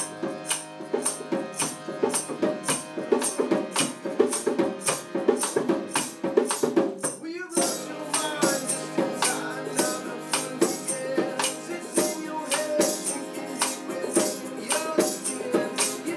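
Psych-rock band playing acoustically: a tambourine keeps a steady beat of about three hits a second over acoustic guitar and piano. The music drops out briefly about seven and a half seconds in, then picks up again.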